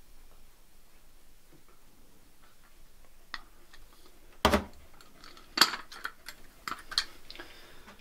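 Small dry seeds poured from a glass jar into a drinking glass, a faint trickle with small ticks. This is followed by a run of sharp clinks and knocks of glassware being handled and set down, the loudest about four and a half and five and a half seconds in.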